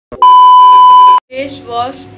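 A single loud, steady test-pattern beep lasting about a second, starting and stopping abruptly: the tone of a TV colour-bars 'no signal' edit effect. A woman's voice follows near the end.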